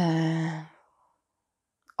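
A woman's hesitant, drawn-out "eee" held on one steady pitch for under a second, then fading away.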